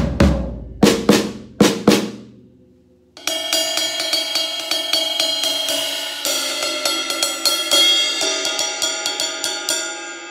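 Drum kit being played: about six separate drum strikes that ring out, a brief pause, then rapid stick strokes on a cymbal that keeps ringing for the rest of the time.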